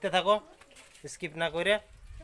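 A man's voice talking close to the microphone: two short phrases with a brief pause between them.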